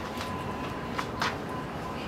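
A few light footsteps on pavement over steady background noise, with a faint constant high tone.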